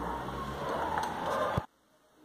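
Steady background hiss and hum. About a second and a half in, a click, then an abrupt cut to dead silence.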